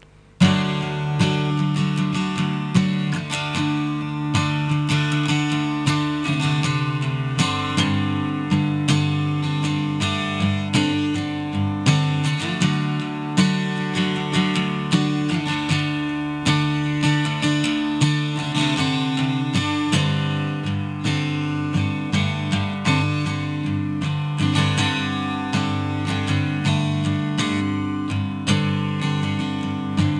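A Taylor acoustic guitar played solo as the instrumental introduction to a song, starting about half a second in with a dense run of strummed and picked notes.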